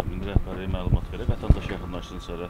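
Men's voices talking over one another in short broken phrases. A faint steady hum runs underneath, and there are two low thumps about a third of a second and a second and a half in.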